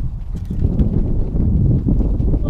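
Wind buffeting the microphone: a loud, uneven low rumble that swells about half a second in.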